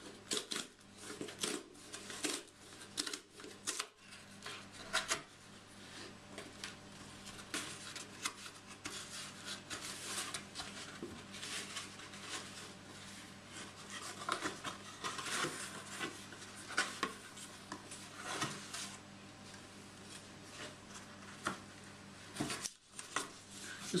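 Cardboard packaging being torn open and handled by hand: a long run of irregular tearing, scraping and rustling of cardboard and paper, busiest in the first few seconds.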